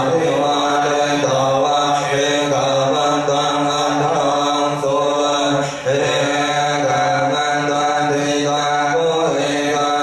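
Thai Buddhist chanting by many voices in unison, a blessing chant on long held notes at a near-steady pitch, with one short break about six seconds in.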